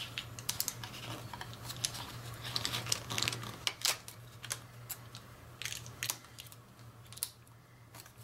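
Copper foil tape crinkling and clicking as it is pressed and smoothed into a plastic case by fingers and its paper backing is peeled away: a run of irregular small clicks and crackles, thinning out toward the end, over a steady low hum.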